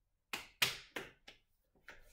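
A handful of sharp knocks and clacks, about five in under two seconds and irregularly spaced: small hard objects being set down and moved about on a hard surface.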